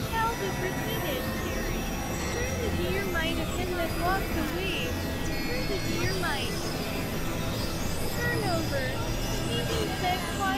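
Experimental electronic soundscape: a steady low synthesizer drone under many short, warbling pitch glides that bend up and down, mixed with indistinct voice-like sounds with no clear words.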